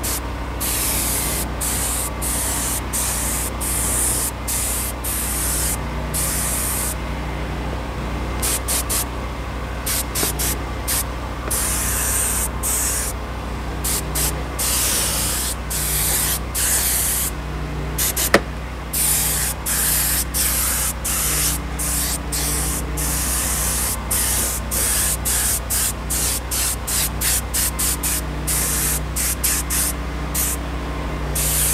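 Harbor Freight air-powered detail spray gun, run at 45 psi, spraying a 1:1 dressing mix onto a vinyl door panel: the trigger is pulled and released again and again, giving many short hissing bursts of spray and a few longer ones. A steady low hum runs underneath, and there is one sharp click about eighteen seconds in.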